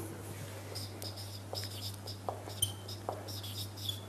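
Marker pen squeaking on a whiteboard as a word is written, in a run of short high strokes starting just under a second in, over a steady low hum.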